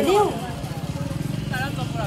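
A motor vehicle's engine idling close by, a steady low rumble with a fast, even pulse.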